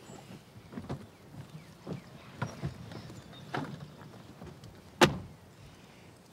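Soft knocks and shuffling as people climb into an SUV, then a car door shut with a single sharp bang about five seconds in.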